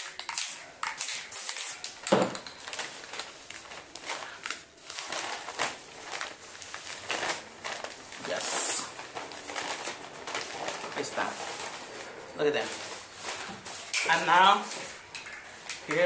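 Sheet of newspaper crinkling and rustling in irregular crackles as it is pressed down onto a painting and peeled off.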